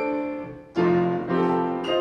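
Grand piano playing a solo passage of a song accompaniment without the voice: a chord rings and fades, then a new chord is struck about every half second.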